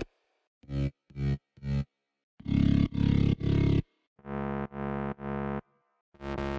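Synthesized EDM mid-bass layers auditioned one preset at a time, each playing the same three-stab phrase: three short stabs, then three longer, louder stabs, then three more that are a little quieter.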